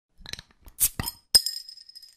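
Glass clinking: a few short clicks and knocks, then a sharp glass clink just over a second in that rings on briefly with a high tone and fades.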